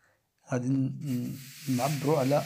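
A voice speaking. About a second in, a steady hiss comes in underneath it.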